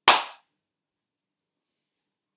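A single sharp clap of a man's hands, dying away within about half a second.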